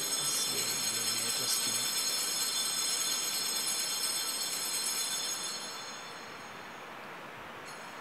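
Altar bells ringing at the elevation of the chalice during the consecration, a sustained high ring that fades out about six seconds in; a fresh ring starts near the end.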